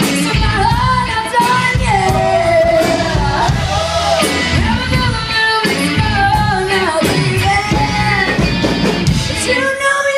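Live rock band: a woman sings lead over electric guitar, electric bass and drums. Just before the end the instruments cut off, leaving her voice alone.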